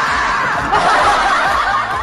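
Sustained laughter, dense, as of several voices laughing together.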